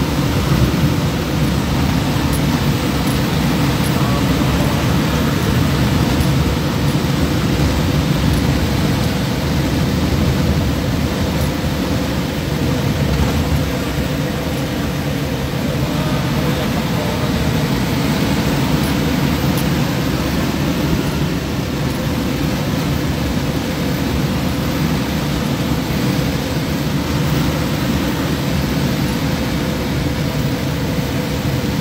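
Steady engine and road noise of a vehicle driving at road speed, a constant low rumble that does not change much.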